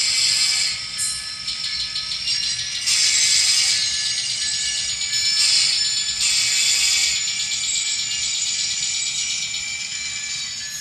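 Diesel engine sound from the sound decoder of an N-scale CSX EMD SD40-3 model locomotive, played through its tiny onboard speaker as the model creeps along the track. The sound is thin and high-pitched with a rattle, and it has several loud bursts of hiss.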